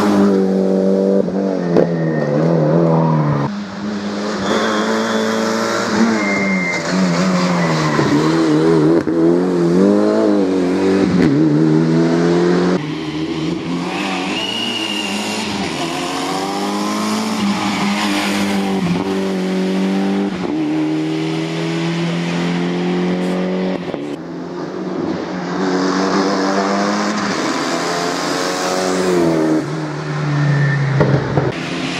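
Mitsubishi Lancer Evo's turbocharged four-cylinder engine at racing revs on a hill-climb course, its pitch repeatedly rising under acceleration and dropping at each gear change and for each bend. About thirteen seconds in the sound cuts to a quieter, more distant pass.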